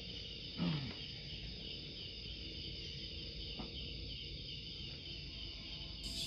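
Crickets and other night insects chirping steadily in a high, even drone. About half a second in, a short sound slides quickly down in pitch, and there is a faint click a little past the middle.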